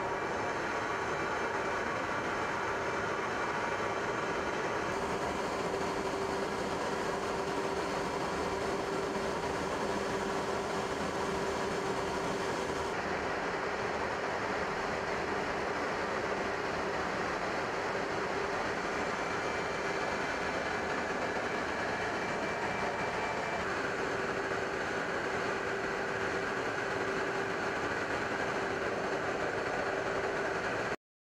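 Steady drone of aircraft engines and rushing air with a held humming tone, heard in flight alongside a formation of F-35B jets. The sound changes slightly in character about five, thirteen and twenty-four seconds in.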